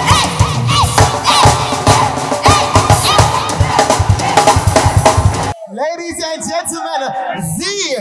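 A high school stage band playing live, with drum kit, horns and singers, stops abruptly about five and a half seconds in. Voices shouting and cheering follow.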